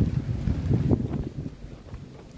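Wind buffeting the microphone in a moving car: an irregular low rumble, loudest in the first second or so, then easing off.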